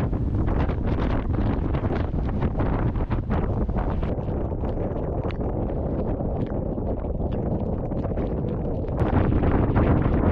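Gale-force wind blasting across the microphone in continuous gusts, a heavy low rumble broken by frequent crackling buffets. It gets louder and harsher near the end.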